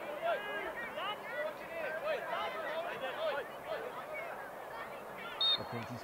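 Several players' voices shouting and calling to each other across the pitch, overlapping and distant. A short, steady, high referee's whistle blast sounds about five and a half seconds in, signalling the free kick to be taken.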